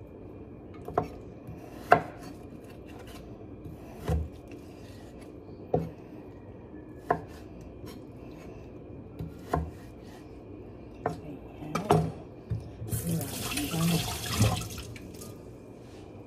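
A kitchen knife cutting food on a wooden cutting board, with single sharp knocks spaced one to two seconds apart. Near the end a rustling, scraping noise lasts about two seconds.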